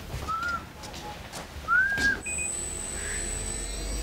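Two short rising whistles about a second and a half apart, followed by a faint steady high-pitched tone that starts about halfway through.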